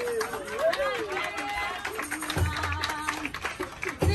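Live African song-and-dance performance: performers' voices calling and chanting, with sharp percussive hits scattered throughout.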